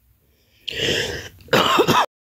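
A woman coughing twice in quick succession, starting a little over half a second in. The second cough carries some voice in it.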